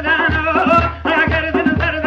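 Kurdish folk music: a reedy wind pipe (naye) plays a wavering, ornamented melody over a tepl drum beating about twice a second.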